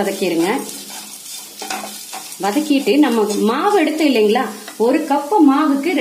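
A wooden spatula stirring and scraping grated coconut and dal in hot oil in a nonstick pan, the mixture sizzling, with wavering squealing tones that rise and fall as the spatula rubs the pan. It goes quieter for a moment about one to two and a half seconds in.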